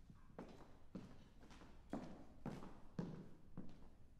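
Footsteps of a person walking across a wooden stage floor, faint and even, about two steps a second.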